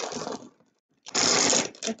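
Small glass marbles rattling and clattering: a handful is scooped up, then a louder clatter about a second in as they go into a glass jar already full of marbles.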